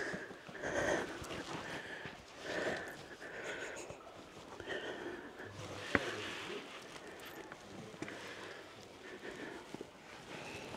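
A hiker breathing hard in short, soft puffs while scrambling over rock, with one sharp tap about six seconds in.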